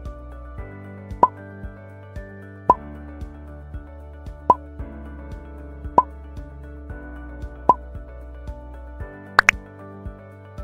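Background thinking-time music with steady held notes, punctuated by a plop sound about every second and a half, five times, then two quick sharp clicks near the end.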